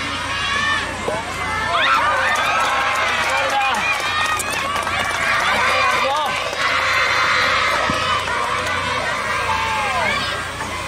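A crowd of spectators shouting and cheering, many voices overlapping, with a denser stretch of shouting about seven seconds in.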